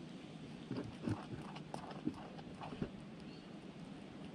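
A mongoose foraging at a plastic coffee canister: a run of irregular knocks and taps from about a second in until near three seconds, with three louder hits among them.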